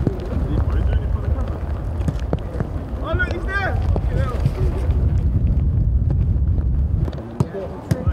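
Wind buffeting the microphone, a heavy low rumble that drops away about seven seconds in, under scattered voices of players on the pitch, with a raised call about three seconds in. A few sharp knocks come near the end.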